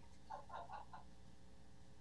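Quiet room tone over a video-call line, with a few faint, distant voice-like syllables in the first second.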